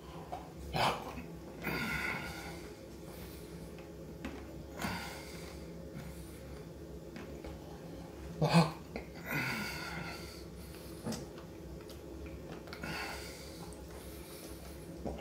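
A man breathing out hard through his mouth in a series of heavy puffs a second to a few seconds apart, the reaction to the burn of a Carolina Reaper chili chip.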